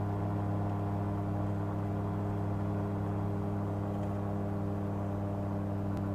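Searey amphibian's rear-mounted pusher engine and propeller running steadily in flight, a constant low drone heard from inside the cockpit.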